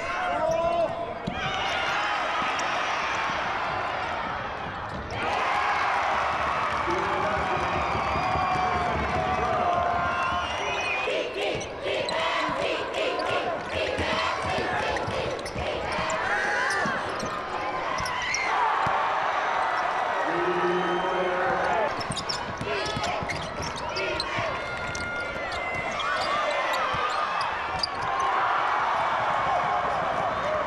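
Live high school basketball game in an arena: a ball dribbling on the hardwood court, with a run of knocks in the middle, over the continuous shouting and chatter of a large crowd.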